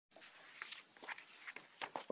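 Faint steady hiss with scattered soft clicks and taps, a few slightly louder ones near the end.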